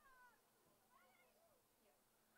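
Near silence, with a few faint high-pitched calls coming and going.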